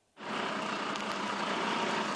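Fire engine's diesel engine idling steadily, coming in abruptly a moment in.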